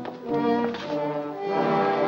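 Orchestral film score with brass holding sustained chords. The chord changes shortly after the start and grows fuller about a second and a half in.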